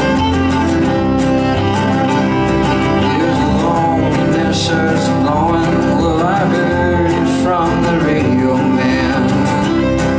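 Instrumental break of a live folk song: acoustic guitar strummed steadily under a fiddle carrying the melody with sliding notes.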